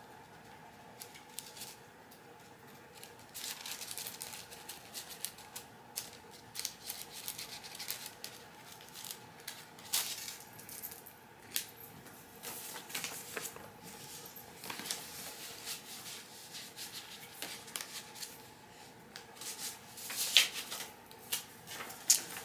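Paper handling: after a few quiet seconds, scattered short rustles and crisp clicks as a greeting card and its envelope are handled, over a faint steady room hum.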